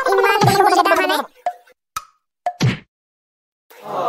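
A voice making a warbling, gargle-like sound for about a second, followed by a few short pops. A wailing voice starts just before the end.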